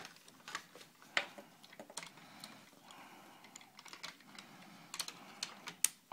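Plastic parts of a large transforming toy robot figure being pulled and handled, giving scattered light clicks and rattles, with a sharper click about a second in and another near the end.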